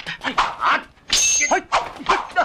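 Fighters' short, sharp shouts and grunts in quick succession during a kung fu sword fight, with a clash and a thin high ringing about a second in.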